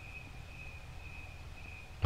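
Crickets chirring faintly in one steady high-pitched trill that wavers a little in strength, over a low background hum.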